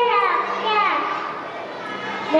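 A young child's high voice speaking lines, the pitch sliding down on a few drawn-out syllables, then trailing off more quietly near the end.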